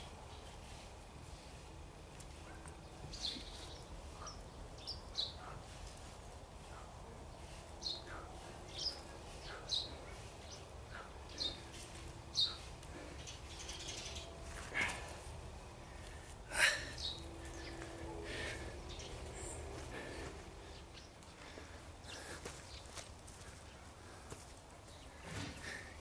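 Small birds chirping off and on over low, steady outdoor background noise, with a couple of louder short sounds in the middle.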